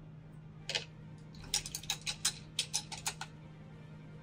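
A paintbrush clicking against the side of a glass water jar as it is rinsed: one click, then a quick run of about a dozen light clicks. A steady low hum runs underneath.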